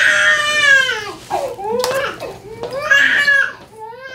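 A baby or young child crying loudly in two long wails, the first falling in pitch.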